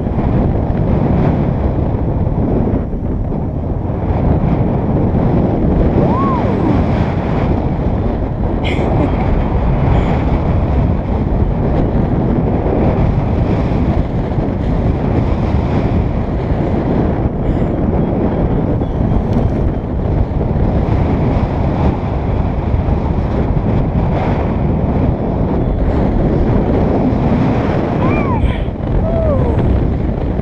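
Steady, loud wind rushing over an action camera's microphone during a paraglider flight.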